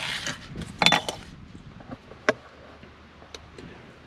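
Handling noise from a plastic handheld shower head and its hose being moved about: a brief rustle, a cluster of sharp clicks about a second in, one more sharp click a little past halfway, then a few faint ticks.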